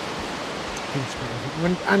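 Steady rush of small sea waves breaking and washing up a sandy beach. Faint voices come in during the second half.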